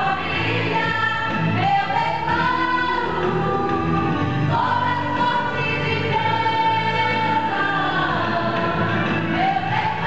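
A women's church choir singing a hymn together in long held notes that glide from one pitch to the next.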